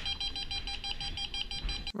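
Handheld Ghost Meter EMF meter beeping in rapid, even pulses, about seven a second: its alarm going off, which the investigator takes as a sign of a spirit nearby. Faint low thuds sit underneath, which the narration takes for footsteps from the floor above.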